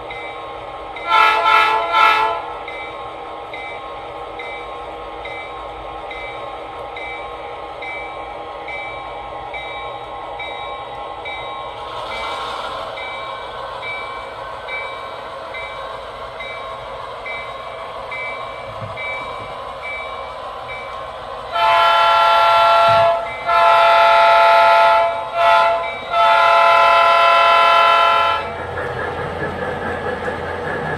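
Sound-equipped model diesel locomotive: two short horn toots about a second in, then its engine sound running steadily with a repeating high ding for the first dozen seconds. Near the end the horn blows long, long, short, long, the grade-crossing signal.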